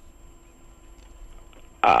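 A short pause holding only a faint steady hum, then one brief voiced sound near the end, a short 'ah' or throaty grunt from a person.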